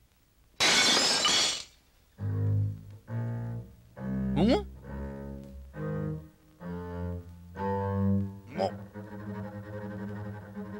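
A burst of hiss lasting about a second, then a cartoon score on low bowed strings playing a string of short, separate notes, with two quick upward slides.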